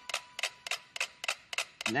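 A group of small mechanical metronomes ticking together on a platform held still, about five or six sharp clicks a second in an uneven pattern: with the platform unable to swing, the metronomes cannot pull each other into step and tick out of sync.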